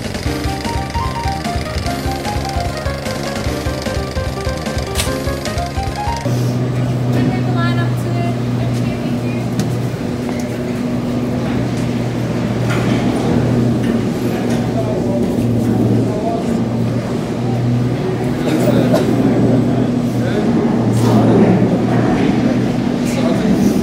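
Title music with a beat for about six seconds, then it cuts to a steady low hum of gondola station machinery with people murmuring around it.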